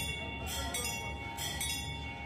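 Temple bell ringing during the aarti: a sustained metallic ring with repeated fresh strikes over a low steady hum.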